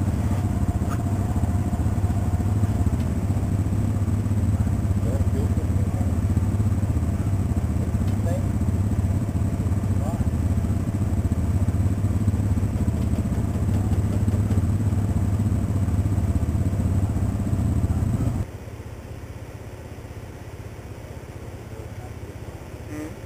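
ATV engine idling steadily, then switched off abruptly about 18 seconds in, leaving a much quieter background.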